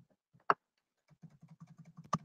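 Typing on a computer keyboard: one sharper key click about half a second in, then a quick run of light keystrokes from about a second in.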